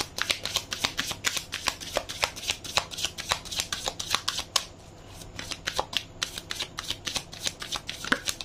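A tarot deck shuffled by hand, the cards slapping and riffling in quick runs of clicks with a brief pause a little past halfway.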